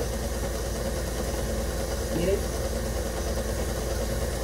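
KitchenAid stand mixer running steadily on a low speed, its beater turning through creamed egg-and-sugar batter as cornstarch is added a little at a time.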